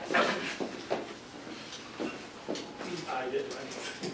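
Indistinct background talk of people in a room, with a few short knocks and clatters of handling, one near the start, one about a second in and one about two seconds in.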